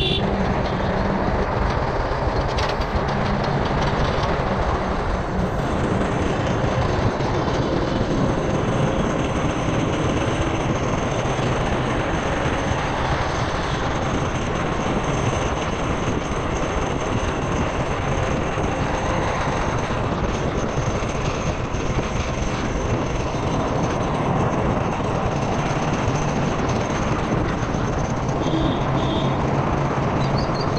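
Steady wind rush and road rumble on a camera mounted on a moving motorcycle, with the bike's engine running underneath.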